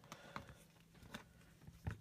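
Faint scattered clicks and taps of a plastic action figure and its accessory being handled, with a slightly louder click near the end.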